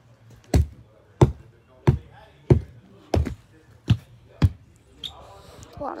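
A hand axe repeatedly striking a weathered wooden board, seven sharp thuds about one and a half a second apart. A few words are spoken near the end.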